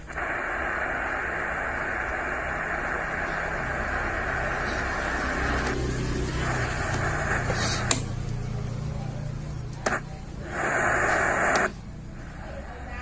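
Puxing PX-247UR radio's speaker hissing with static, untuned between stations. The static drops away about halfway through, sharp clicks of the band-selector switches follow, and then another loud burst of static comes near the end.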